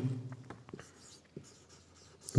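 Marker pen writing on a whiteboard: faint scratching strokes with a few short ticks of the tip against the board.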